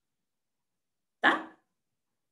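A single short, sharp dog bark a little over a second in, after about a second of near silence.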